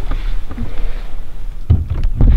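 Steady low rumble under a soft hiss, with no clear voice, swelling louder near the end.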